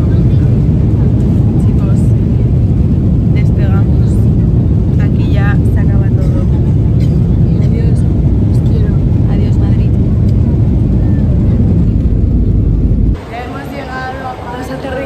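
Loud, steady low rumble of a jet airliner heard from inside the passenger cabin, with faint voices over it. It cuts off abruptly about a second before the end.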